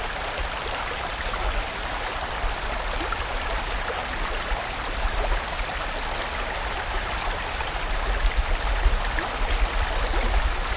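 Mountain stream rushing over rocks: a steady flow of water with a low rumble underneath, which becomes more uneven in the last couple of seconds.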